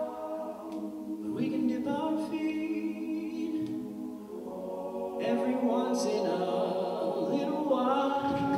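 All-male a cappella group singing sustained chords in close harmony. The voices soften in the middle, then swell louder a little after five seconds in.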